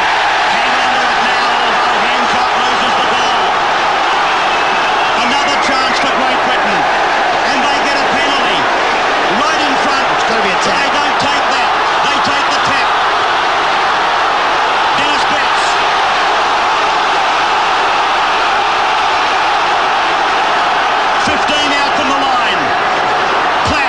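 Loud, steady din of a large stadium crowd, many voices blending into one continuous noise with scattered individual shouts.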